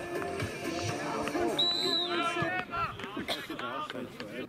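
A short, high referee's whistle blast about one and a half seconds in, over men's voices calling out on the pitch.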